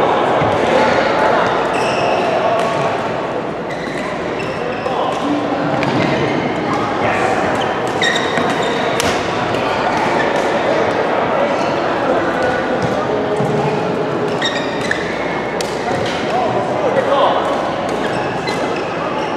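Badminton rackets striking shuttlecocks in a rally, short sharp hits scattered throughout, over the steady chatter of many players echoing in a large sports hall.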